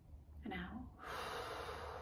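A woman breathing deeply and audibly: a short voiced sound about half a second in, then a long, slow breath let out from about a second in.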